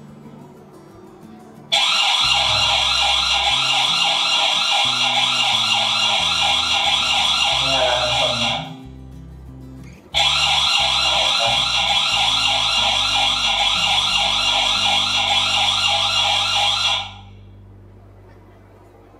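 Electronic alarm siren of a V380 bulb-type IP security camera, sounding in two bursts of about seven seconds each with a fast warbling pitch, each cutting off sharply. It is the camera's alarm sound, just switched on in its app settings.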